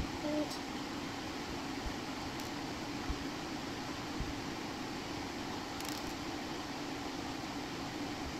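Steady low room hum, with a few faint light clicks as small plastic beads are threaded onto elastic bracelet cord.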